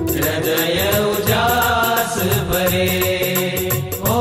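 Gujarati devotional song: a sung melody line over instrumental accompaniment with a steady, fast percussion beat.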